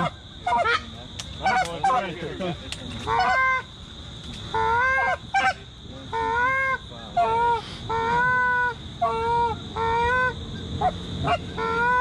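Canada geese honking: a run of loud honks, each rising and then holding, about one or two a second, after a few seconds of quicker, choppier clucks.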